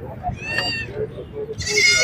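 Goat kids bleating: a high call about half a second in, then a louder one near the end.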